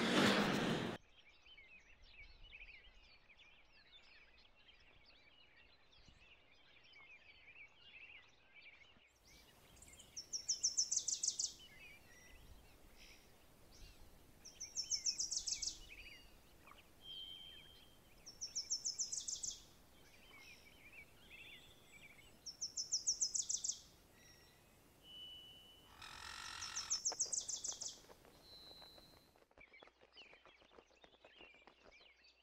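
Nature ambience with a calling animal. Faint high chirping for the first several seconds, then from about ten seconds a loud, rapid trilled call repeated five times, about every four seconds, with a few short high chirps between.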